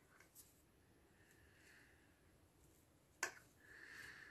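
Near silence: room tone, with one faint click about three seconds in.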